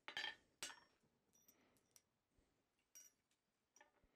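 Blacksmith's hand hammer striking a red-hot steel bar on the anvil: two sharp blows in the first second, then only a few faint metal clinks.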